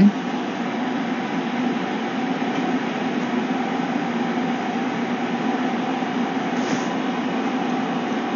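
Steady hum with an even hiss underneath.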